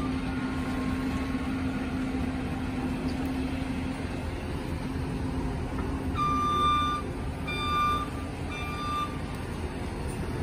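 A John Deere compact track loader's diesel engine runs steadily as the machine moves. In the second half its backup alarm sounds three beeps.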